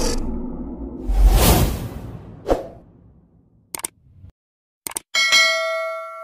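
Intro sound effects: a whoosh and a short hit, then two quick double clicks and a bell-like ding that rings on with several clear tones and fades away, the stock click-and-bell of a subscribe-button animation.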